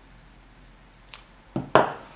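A hand handling paper sticker sheets on a planner page: a small click about a second in, then two short thuds with a paper rustle near the end, the second the louder.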